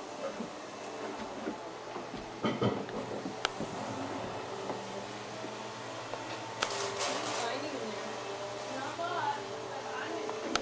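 Faint, indistinct voices talking in a room over a steady low hum, with a few sharp clicks.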